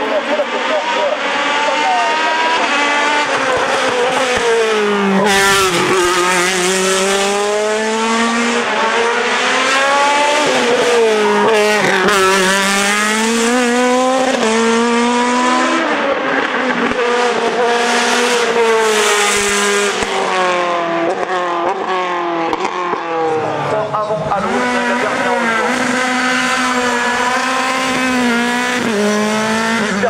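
Single-seat race car engines at high revs on a hill climb: first a Tatuus Formula Master, then a Dallara F317 Mercedes Formula 3 car, each revving up and dropping back in pitch over and over as it changes gear through the climb. The sound changes abruptly about two-thirds of the way through as the second car takes over.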